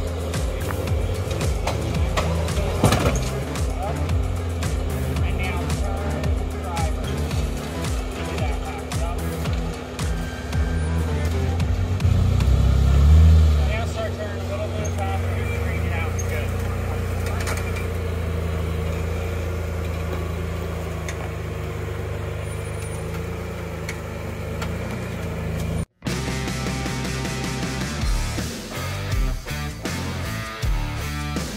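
Lifted Jeep Wrangler's engine running at low revs as it crawls over rocks, with one louder surge of throttle a little under halfway through. The sound breaks off abruptly near the end.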